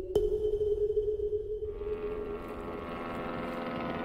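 A click and a steady electronic intro tone that fades out over the first two seconds. From under two seconds in, the many-toned whine of an Airbus A330-243's jet engines fades in and grows.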